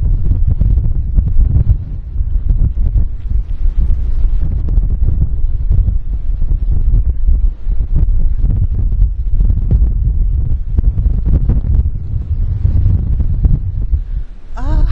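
Strong wind buffeting the microphone: a loud, uneven low rumble that rises and falls in gusts.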